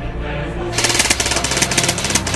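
Airsoft electric rifle firing on full auto, a rapid even string of shots that starts under a second in and runs on.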